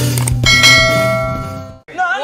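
Bright bell chime sound effect ringing out about half a second in and fading away, the notification-bell ding of a subscribe-button animation, over the end of the intro music.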